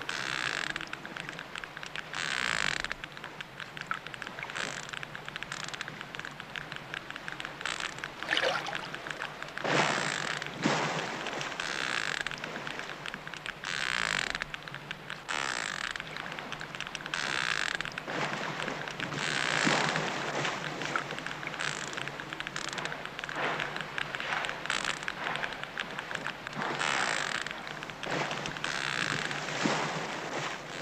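Hydrophone recording of a baby sperm whale underwater: a constant rapid clicking, its echolocation, with a growl swelling up every couple of seconds that may be its cry.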